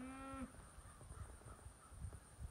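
A calf bawling once, a short held call that ends about half a second in, with a few faint low thumps after it.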